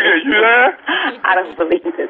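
Speech over a telephone line: voices with the thin, narrow sound of a recorded phone call.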